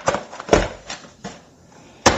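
Small cardboard boxes being handled and set down on a stone countertop: a sharp click at the start, a louder knock about half a second in, then a few softer scuffs.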